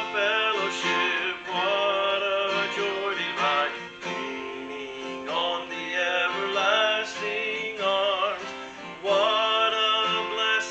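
A man singing a worship song while strumming his acoustic guitar, in phrases with short breaths between them.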